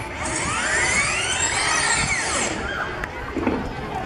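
A noisy whoosh sweep in the dance mix, rising and then falling over about two and a half seconds, as the song cuts out. After it, a few scattered clicks.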